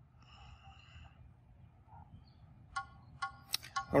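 Stakeout beeps from a GNSS survey controller: a run of short electronic beeps starting a little before three seconds in, coming in quick succession. They signal that the survey pole is within the set stakeout tolerance of the target point.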